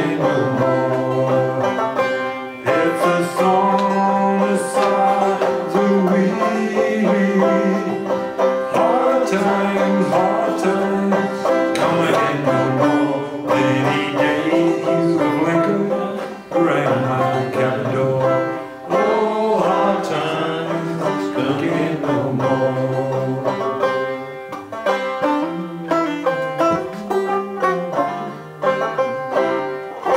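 Banjo strummed and picked as accompaniment to a man's singing voice. In the last few seconds the voice drops out and the banjo plays on alone in separate picked notes.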